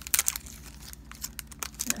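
Foil wrapper of a Pokémon booster pack crinkling as it is handled, a run of small, irregular crackles.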